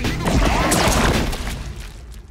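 Trailer soundtrack: music layered with crashes, smashing and sweeping sound effects, dying down near the end.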